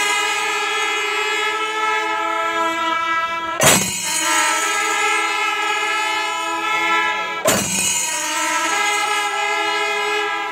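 Pandi melam ensemble: kombu horns and kuzhal pipes sounding loud, held chords in long phrases. A sharp percussion crash starts each new phrase, twice, a little under four seconds apart.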